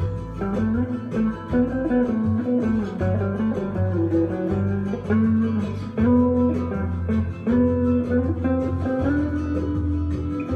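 Semi-hollow electric guitar played through a small amplifier in a rumba-style jam in A minor: a changing melodic line over a sustained low bass line and a steady rhythm.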